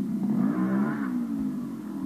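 A Gas Gas two-stroke trial motorcycle engine revs up and back down as the bike's front wheel is worked onto a large drum-shaped obstacle. There is a short low thump partway through.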